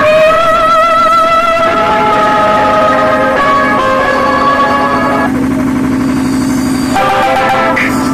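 Loud music played through a tall stack of 'Titanic' DJ speaker cabinets: a wavering, vibrato-laden melody line over a steady pulsing low layer.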